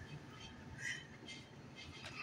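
Quiet room tone with faint, brief soft rustles about a second in, from shredded cheese being sprinkled by hand onto an omelette.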